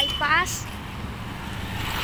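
Roadside traffic noise: motorbike and other vehicle engines running along the street, with a brief pitched voice-like sound in the first half second.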